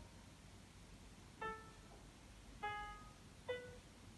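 Faint piano playback from MuseScore notation software: three short single notes about a second apart. Each note sounds as a flat is added to a note in the score.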